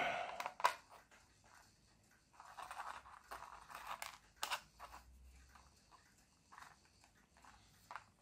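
Faint clicks and soft scraping of small 3D-printed plastic parts being handled and set down on a cutting mat, with a few sharp taps and a stretch of scratchy rustling in the middle.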